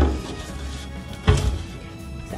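Metal baking sheet knocking against a countertop twice, about a second apart, the first knock the louder, over background music.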